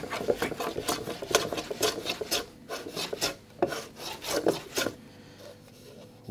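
Long steel hand plane shaving wood from a guitar body in quick short strokes, several a second, each a brief scraping swish. The strokes stop about five seconds in. The plane is cutting only over the neck area to set the neck break angle.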